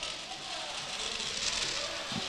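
Quiet outdoor ambience with faint, distant voices calling and a steady hiss underneath.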